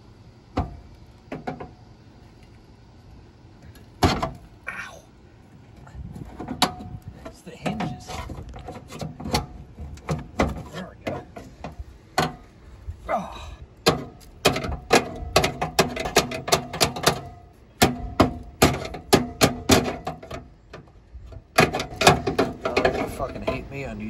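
A crowbar prying at the locked metal glove box of a 1964 Chevy Impala: repeated sharp clicks, knocks and scrapes of metal, sparse at first and coming thick and fast in the second half.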